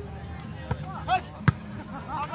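A volleyball struck once with a sharp smack about one and a half seconds in, amid players' shouting voices.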